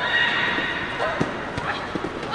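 A fighter's high, drawn-out shout (kiai) during a taekwondo exchange, fading after about a second, followed by a couple of short knocks from kicks or footwork on the mat.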